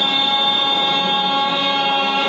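A steady drone of held notes from the bhajan's accompanying instrument sounds without a break between the singer's lines.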